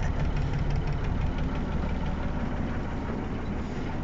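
Diesel engine of a 1962 Mercedes-Benz 312 bus idling steadily while warming up, heard from inside the bus as an even low rumble.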